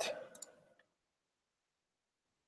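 A computer mouse clicking twice in quick succession, just after a spoken word ends.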